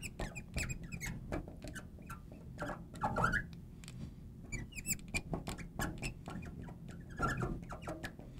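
Marker pen squeaking and ticking in short irregular strokes on a glass writing board as words are written out.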